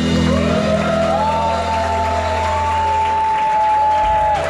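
Live band music at the close of a song: a low held chord fades, then a high note glides up about half a second in, is held for a couple of seconds and drops away near the end.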